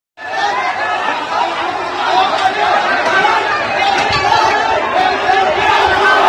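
A crowd of many voices talking over one another, loud and continuous.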